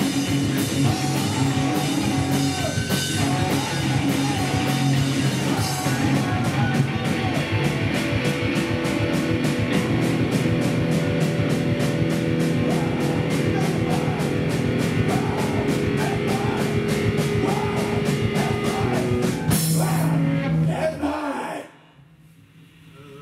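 Live rock band with electric guitars, bass and drum kit playing the close of a song, the drums keeping a steady fast beat through the middle. The band hits a final held chord that cuts off sharply just before the end.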